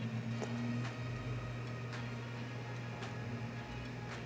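A few faint, scattered computer-mouse clicks over a steady low hum while a curve is set in photo-editing software.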